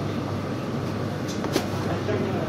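Steady supermarket background noise: a low hum with a thin steady tone running through it, and one sharp click about one and a half seconds in.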